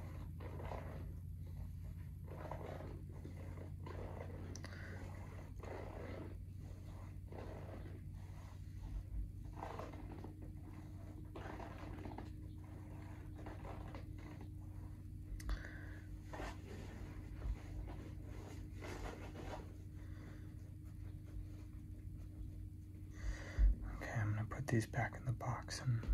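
Fingertips and fingernails scratching and rubbing over the small rubber traction nubs on the sole of an Adidas spikeless golf shoe: a string of short, irregular scratches, with a steady low hum underneath. Near the end the handling gets busier and louder as the laces are touched.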